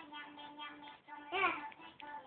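Music plays with steady held notes, and about halfway through a toddler's voice sings out one short note that rises and falls, the loudest sound.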